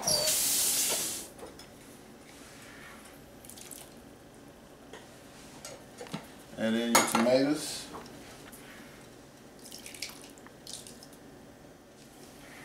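Kitchen work sounds: a brief rush of running tap water in the first second, then quieter clinks and scrapes of cans and utensils as canned chili beans are emptied into a stainless steel pot.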